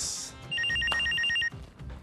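Landline telephone ringing: one ring of rapid, high-pitched pulsing beeps, about ten a second, starting about half a second in and lasting about a second.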